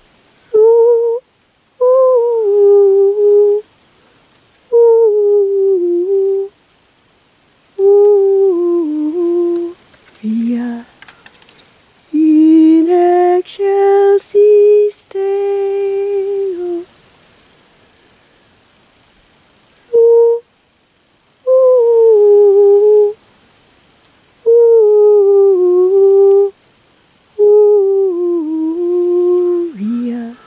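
A woman singing wordlessly in high, held notes. The short phrases slide downward and are separated by pauses.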